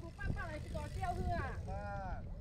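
People talking as they pass, over a low steady rumble of wind on the microphone.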